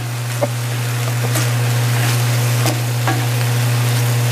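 Beef chunks sizzling as they sauté in their own juices in an enamel-lined pan, with a few short scrapes of a wooden spoon stirring them. A steady low hum runs underneath.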